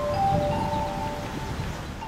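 Wind chimes ringing, several clear notes overlapping and each held for about a second, over a low rumble of outdoor noise.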